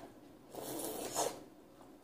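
Noodles slurped into the mouth in one pull lasting about a second, starting about half a second in and loudest just before it stops.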